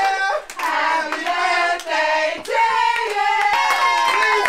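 A group of people singing together while clapping their hands along.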